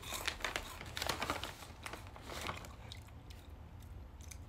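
Light crackly crunching of mini puffed rice cakes being bitten and chewed, mixed with crinkling of the plastic snack bag in hand. The sounds are busiest in the first couple of seconds and then thin out.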